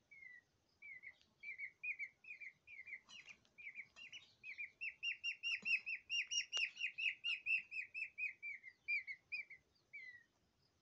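Peafowl chick peeping: a string of short, falling chirps, a few at a time at first, then a fast steady run of about four a second from about four seconds in, tailing off near the end.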